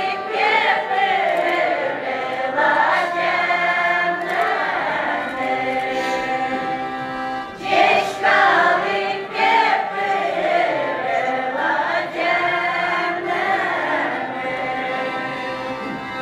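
Udmurt folk ensemble singing a folk song together in chorus, mostly women's voices, in phrase after phrase, with a button accordion playing along underneath.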